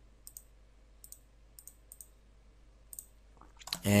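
Faint, sharp computer mouse clicks, about six scattered over three seconds, some in quick pairs like double-clicks. A man's voice starts near the end.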